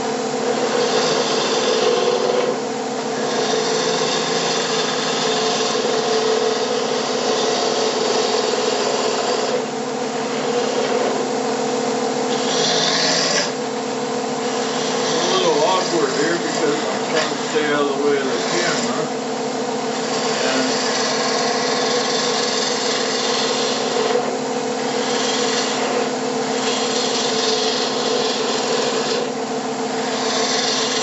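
Wood lathe humming steadily as a turning tool cuts a square cherry blank round into a cylinder. The cutting hiss comes in long passes with short breaks between them.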